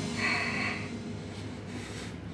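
A short, forceful breath blown out through the lips during a seated dumbbell shoulder press rep, then low steady room noise.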